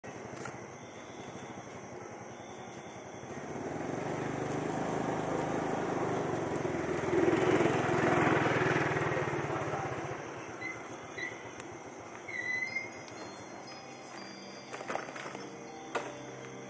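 A vehicle passing by: its noise swells over a few seconds, peaks near the middle, then fades away.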